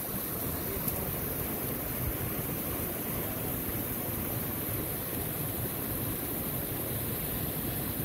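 Steady rushing of a rocky mountain creek, water running over and between boulders.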